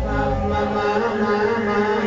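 Live electronic pop band: a male singer holding long notes into a microphone over sustained synthesizer chords, with the drums and bass dropped out.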